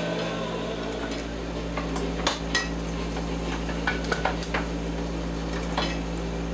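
Scattered sharp metallic clinks and clunks from a letterpress printing press and its handling, irregular rather than a steady rhythm, over a steady machine hum.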